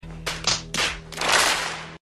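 Audience applauding: a few separate claps that quickly swell into full applause, which then cuts off abruptly.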